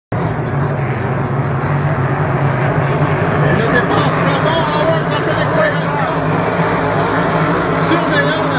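Hydro 350 class racing hydroplanes running at speed across the water, heard from shore as a steady engine drone.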